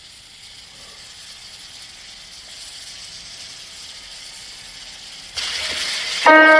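Faint steady hiss that slowly grows louder, then a sudden louder rush of noise near the end.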